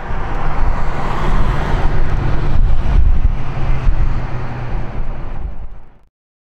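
Cabin sound of a 2006 Range Rover Sport Supercharged on the move: its supercharged V8 runs with a steady low hum under road and tyre noise. The sound fades out near the end.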